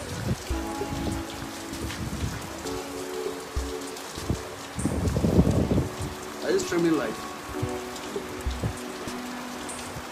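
Steady rain falling on wet concrete and graves, an even hiss throughout. Faint sustained voices or music are mixed in, with a louder low rush about five seconds in.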